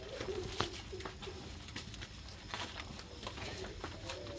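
Quiet outdoor ambience: a low steady hum with scattered faint clicks and faint low wavering calls.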